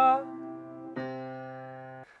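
Grand piano sounding a low C bass note. A higher note held above it stops just after the start and the low note fades. About a second in, the C is struck again and left to ring and die away.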